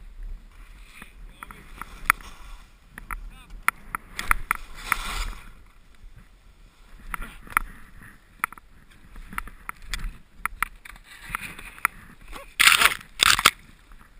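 Sliding through deep powder snow among tight trees: snow swishing under the rider, with snow-covered branches brushing and scraping against the camera in scattered clicks and rustles. Near the end, two loud scraping rushes as branches sweep across the camera, followed by a short exclamation of "oh".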